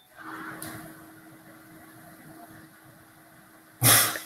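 Faint background noise over a video-call audio line with a steady low hum, then a sudden loud burst of noise just before the end.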